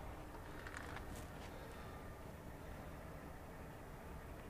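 Faint clicks about a second in as the Austin-Healey's bonnet is released and raised, over a low steady outdoor rumble.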